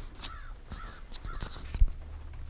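Handling noise of a camera being moved about a car's carpeted rear floor: light clicks and rustles, then a single sharp knock near the end.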